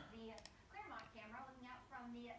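Faint voice talking in the background, barely above near silence.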